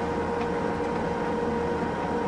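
Steady engine drone with a constant hum, heard inside the cab of a self-propelled crop sprayer driving across a field.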